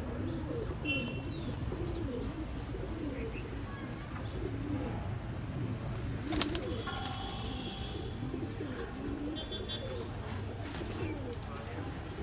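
Domestic pigeons cooing throughout, with a few short high chirps. A single sharp click about six and a half seconds in is the loudest moment.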